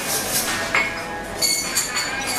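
Café sounds: cups and dishes clinking over a murmur of voices, with a thin steady high whine starting about one and a half seconds in.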